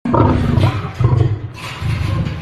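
Male lion growling at close range in a run of loud, low, grunting pulses.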